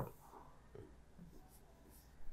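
Near silence: room tone with a few faint scratches of a pen writing on a board.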